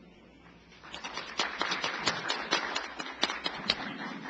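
Audience applauding, beginning about a second in and thinning out near the end.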